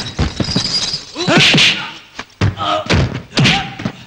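Movie fistfight sound effects: a rapid series of punch and body-blow thuds, with men's shouts and grunts between the hits.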